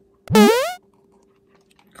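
A short, loud sound effect: a single pitch sweeping steeply upward, about half a second long.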